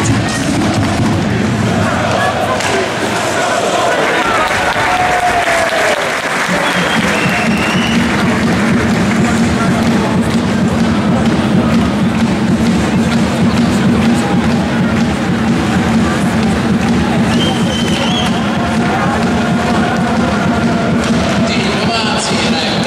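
Ice hockey arena crowd noise, with voices, clapping and cheering, mixed with music. From about six seconds in a steady low drone holds under it.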